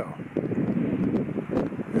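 Outdoor background noise: wind buffeting the microphone, a steady low rumble without any clear pitch or rhythm.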